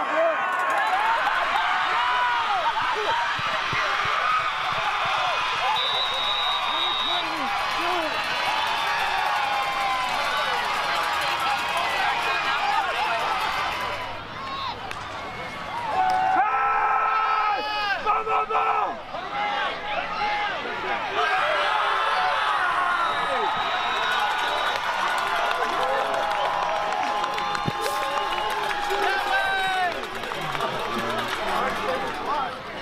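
Football game crowd in the stands, many voices shouting and cheering over one another. The noise dips briefly about halfway through, then surges back louder.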